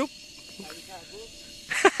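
Faint steady hiss of a hand-pumped knapsack sprayer's nozzle putting out a fine spray mist, with a short burst of laughter and voice near the end.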